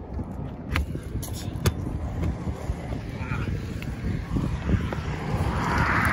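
Phone-microphone handling noise and wind rumble while the exterior service door of an RV's cartridge toilet is worked open by hand, with a few sharp clicks from the door and latch, about a second and a second and a half in.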